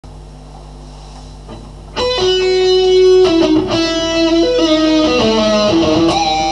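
Electric guitar: a steady low hum, then about two seconds in a lead line of held single notes starts, moving from note to note.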